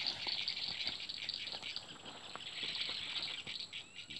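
Steady, high insect chorus, crickets or cicadas buzzing together, with a few faint rustles and clicks from handling in the grass at the water's edge.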